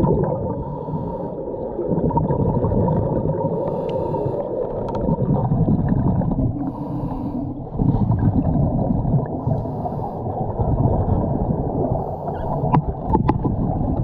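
Muffled underwater rushing and bubbling of a scuba diver's exhaled regulator bubbles, swelling and easing in surges every few seconds. A few sharp knocks come near the end.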